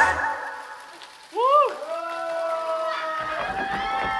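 The backing track of a pop song stops. About a second later a high voice gives a short shout that rises and falls, and then voices call out together in one long, drawn-out cry.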